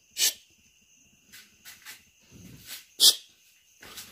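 Crickets trilling steadily in the night, broken by two short, sharp hissing bursts, one just after the start and one about three seconds in, with a few fainter low sounds between them.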